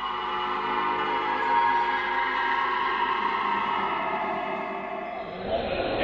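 Ambient music of long, steady held tones, swelling slowly. Near the end it gives way to the noise of a crowd in a large hall.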